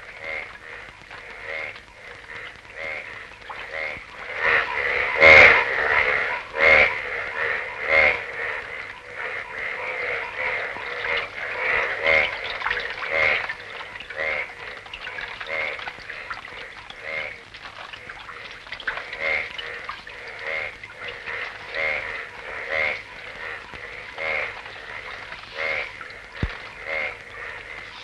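A chorus of frogs croaking, pulsed calls overlapping at roughly one a second, loudest about five to eight seconds in.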